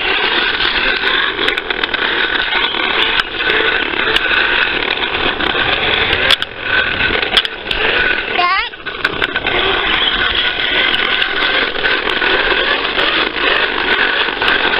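Fisher-Price toy lawnmower clattering continuously as it is pushed along, with many small clicks, and one rising squeal about two thirds of the way through.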